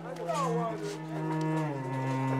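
Film score of low bowed strings holding a sustained note that steps down in pitch near the end, with a market crowd's voices underneath.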